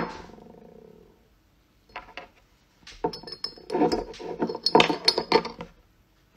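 Metal scissors clinking against a small drinking glass: a sharp clink with a ringing note that fades over about a second, two light taps, then a busier run of clinks and rattles in the second half.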